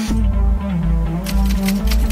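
Electronic background music with a steady beat. From a little past halfway, a fast, even run of typewriter-like key clicks joins it, a sound effect for the on-screen text being typed out.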